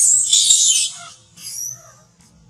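Baby long-tailed macaque screaming in high-pitched distress shrieks while held down by an adult: one long shriek in the first half, then a shorter one near the end.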